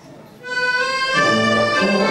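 Live instrumental music starts about half a second in with a single held high note, and changing low bass notes join about a second in.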